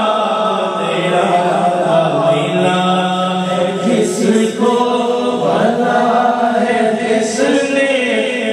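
A man's voice singing a naat, an Islamic devotional poem, into a microphone, with long held notes that bend and slide in pitch.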